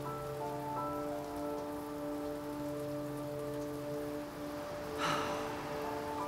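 Background score: a soft held chord of steady sustained tones, with a few higher notes coming in just after the start and the lowest note dropping out about four seconds in. A brief breathy noise comes about five seconds in.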